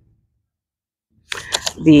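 A woman's speech breaks off into about a second of dead silence. A few short clicks follow, and her speech resumes near the end.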